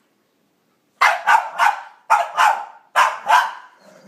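Boston Terrier barking: about seven sharp barks in three quick bursts, starting about a second in. She is barking at another dog on the television.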